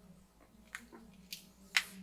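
A few faint, short clicks and taps from a power bank and its USB charging cable being handled, the sharpest near the end.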